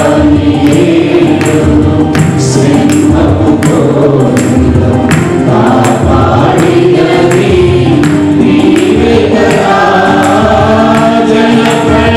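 Mixed choir of women and men singing a Telugu Christian worship song over instrumental backing with a steady percussion beat.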